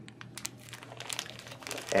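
Clear plastic parts bag, holding terminal blocks and a clip, crinkling as it is handled, with a quick irregular run of crackles.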